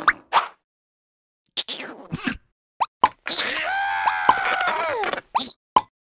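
Cartoon sound effects: a few short plops and clicks, then a high, wavering cartoon character's voice held for about two seconds, rising and then falling in pitch, with more clicks near the end.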